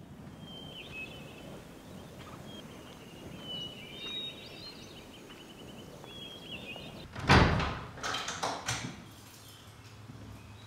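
Small birds chirping over a low outdoor ambience, then about seven seconds in a loud clunk followed by a few rattling knocks as a heavy wooden door is unlatched and pulled open.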